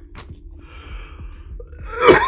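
A man's short, breathy gasp, quiet next to the talk around it.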